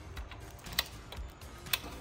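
Crinkly protective plastic film crackling as it is pulled off a new motorcycle's instrument cluster, with two sharp clicks about a second apart.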